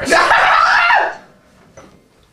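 A sharp smack at the very start, then a man's loud yell for about a second: a cry at a hard knee-reflex strike.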